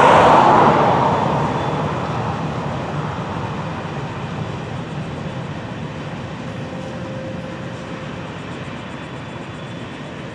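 Florida East Coast diesel locomotive 433 and the ballast hopper cars of a work train passing close by, with engine and rolling-wheel noise loudest about a second in, then fading steadily as the train moves away.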